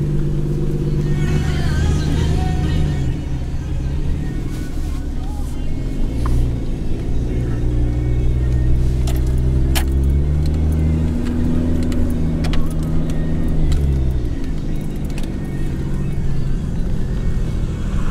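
Music playing on a car stereo inside a moving car, its low notes changing every few seconds over the steady rumble of the engine and road noise, with a few light clicks.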